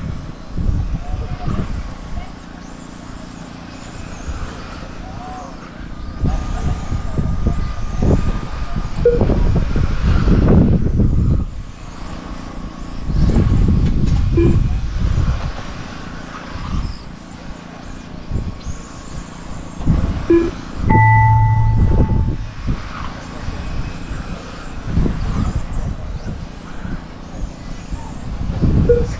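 Electric 1/10-scale front-wheel-drive RC touring cars racing, their motors heard as faint high-pitched whines rising and falling, under loud rumbling gusts of wind on the microphone. A short electronic beep sounds about three quarters of the way through.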